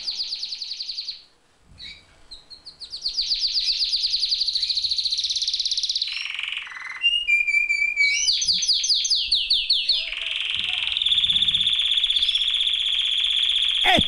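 A high-pitched siren-like sound effect: rapid rising sweeps repeated several times a second, with a short gap near the start and a brief lower tone in the middle, settling into a steady held high tone over the last few seconds.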